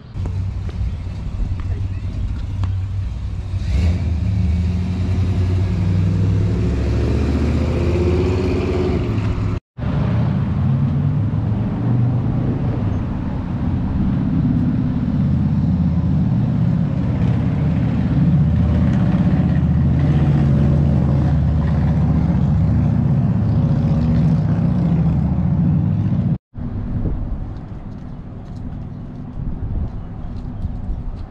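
Motor vehicle engines running close by on a town street, loud and steady, with pitch that wavers up and down. The sound breaks off for an instant twice, about ten seconds in and near the end.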